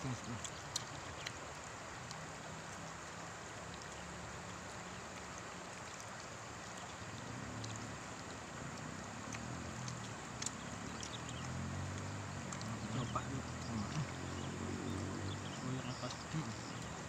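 Steady rushing of a river flowing close by, with low murmuring voices in the second half and a few small clicks.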